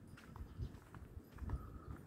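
Faint outdoor ambience at dusk: a low rumble with a few faint, short high chirps scattered through it.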